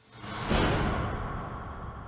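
News channel 'Breaking News' transition sting: a whoosh sound effect that swells in, peaks about half a second in, then fades and cuts off abruptly.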